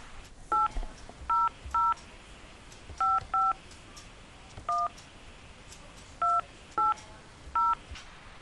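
Telephone keypad touch tones: nine short two-tone beeps in an uneven rhythm, a number being keyed into an automated phone menu.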